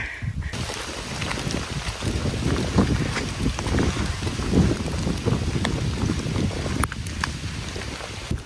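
Wind rumbling over the microphone of a phone carried by a walking hiker, with many faint crackles; it dips briefly near the end.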